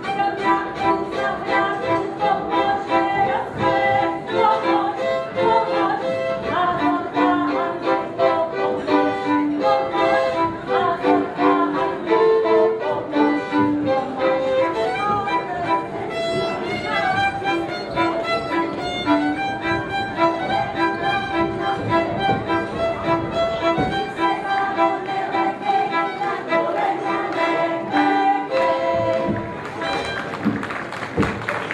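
Folk dance tune with a fiddle-like bowed-string melody over a steady, strongly rhythmic accompaniment, ending near the close.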